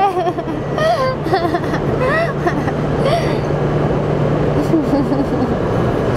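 Railway station platform noise: a steady low hum and rumble under scattered voices, the hum stopping about five seconds in.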